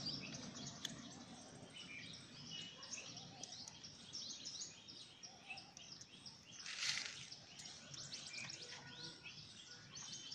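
Faint small birds chirping, with many short calls throughout, and a brief noisy scrape about seven seconds in.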